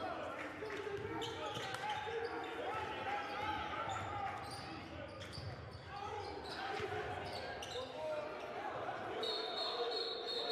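Basketball dribbling on a hardwood court with players' voices calling out in a big indoor arena with no crowd. Near the end a referee's whistle sounds, a steady high tone, stopping play.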